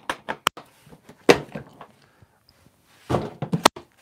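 Hard plastic Milwaukee Packout tool box being unlatched from a stack, lifted off and set down on a concrete floor. A few sharp clicks come at the start, a single thunk about a second in, and a cluster of knocks near the end.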